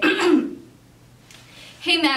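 A person briefly clears her throat, followed by a short quiet pause; a woman starts speaking just before the end.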